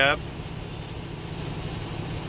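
Semi truck's diesel engine idling steadily, heard from inside the cab, just after start-up while it builds air pressure. A faint high-pitched whine runs along with the low rumble.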